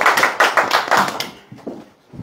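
A small group of people applauding with dense hand claps that die away near the end.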